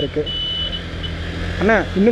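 Steady low rumble of a motorcycle ride through city traffic, engine and wind noise on the bike-mounted microphone. A brief thin high beep sounds about a quarter second in and lasts about half a second.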